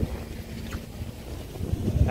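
Wind buffeting the camera microphone as a low, uneven rumble, with a faint steady hum underneath.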